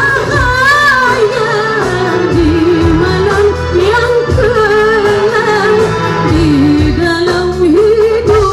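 A woman singing a gambus-style qasidah song live, her voice wavering through ornamented, melismatic runs over keyboard and hand-drum accompaniment.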